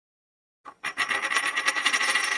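Coin-spinning sound effect: after a silent start, a single click, then a fast metallic rattle with a steady ring, as of a coin spinning down on a hard surface.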